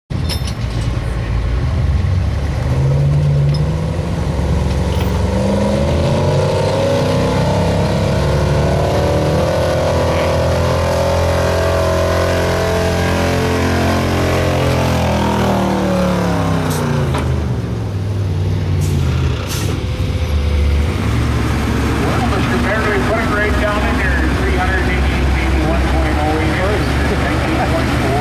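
A 1976 Ford F-350 Super Camper Special pickup's V8 revving under load as it drags a weight-transfer pulling sled over dirt. The engine pitch climbs steadily for about ten seconds, holds, then drops away over a few seconds as the pull ends.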